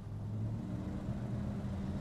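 Low, steady hum of a car engine running nearby in street background noise.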